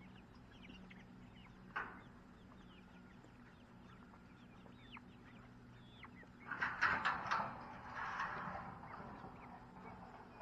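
A flock of young chickens cheeping and clucking with frequent short, falling chirps. A louder commotion of calls and scuffling breaks out about two-thirds of the way through, then settles.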